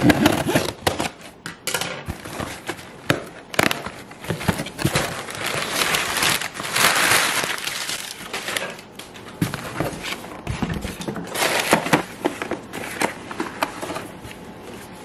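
A cardboard shipping box being unpacked by hand. A blade slits the packing tape, then the cardboard flaps are opened and paper packing is crinkled and rustled, in irregular scrapes, clicks and crackles with a longer loud stretch of crinkling about halfway through.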